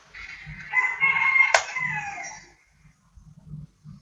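A long, pitched animal call lasting nearly two seconds, its tone falling away at the end, with a single sharp click about halfway through it.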